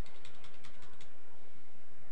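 Computer keyboard arrow keys being tapped in a quick run of light clicks during the first second, nudging an object in small steps.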